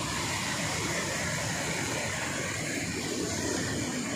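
Sea waves washing over and breaking among large shoreline boulders: a steady rushing noise.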